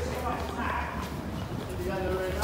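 Footsteps of a person walking on stone paving slabs, a steady walking rhythm, with indistinct voices in the background.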